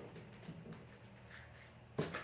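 Faint, light taps and rustles of tarot cards being handled on a tabletop, over a low steady room hum.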